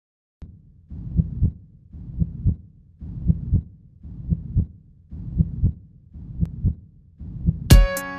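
Heartbeat sound opening a pop song: paired low thumps, about one pair a second, growing louder. The song's instruments come in just before the end.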